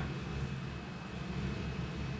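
A steady low hum with a faint, thin high whine over it, unchanging throughout.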